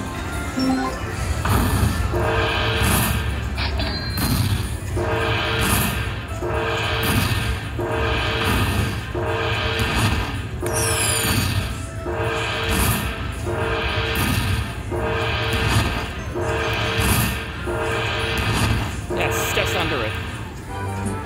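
Aristocrat Dragon Cash slot machine's win-tally music, a repeating jingle pulsing about once a second as the bonus win counts up on the screen, over casino background noise.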